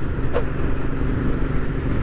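Royal Enfield Interceptor 650's 648 cc parallel-twin engine running steadily at cruising speed through aftermarket exhausts, with wind and road noise over it.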